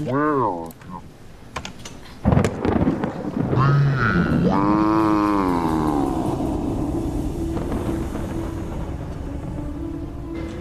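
A sudden crack of thunder about two seconds in, with storm rumble beneath. It is followed by a long, warped, voice-like electronic tone that bends in pitch and then settles into a steady low hum.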